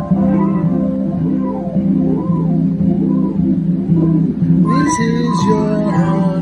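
Electronic keyboard played live, sustained chords under a moving melodic line in an organ-like tone, with the part changing about three-quarters of the way through.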